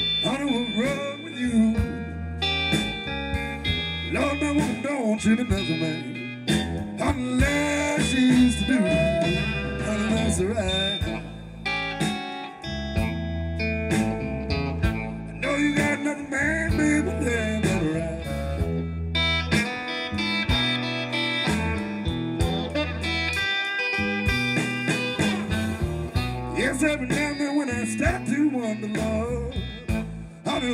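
Live electric blues band playing a song: saxophone and electric guitar lines over bass and drums.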